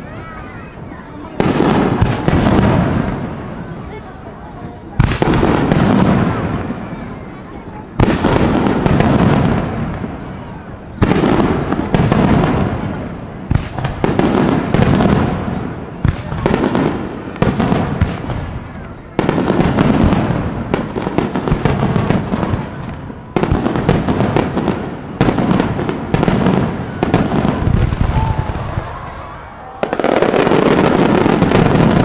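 Fireworks display: aerial shells burst one after another, each a sudden bang followed by a long rumbling tail, about fifteen in all. The bangs come closer together in the second half.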